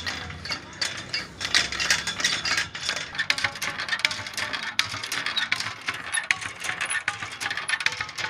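Hand pump worked by its long iron handle, its metal linkage and pivots giving a rapid, irregular clicking and clanking that gets louder about a second and a half in.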